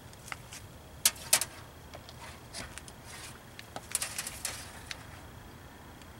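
Scattered sharp clicks and light rattles of multimeter test leads and alligator clips being handled and clamped onto a car battery's terminal; the loudest two clicks come about a second in.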